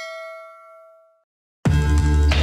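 A notification-bell chime sound effect strikes once and rings with several clear tones, fading away within about a second. After a short silence, loud music with a deep steady bass starts abruptly near the end.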